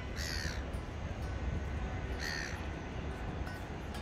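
A bird gives two short, harsh, caw-like calls about two seconds apart, over a steady low background rumble.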